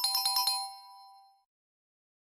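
Quiz answer-reveal sound effect: a short, bright chime jingle of about five quick bell-like notes in half a second, the last tones ringing on and fading out within about a second and a half.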